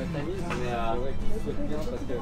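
Men talking in French, with a steady low rumble underneath.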